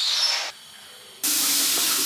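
Shower spraying water: a softer hiss at first, then a loud, full rush of spray from a little over a second in.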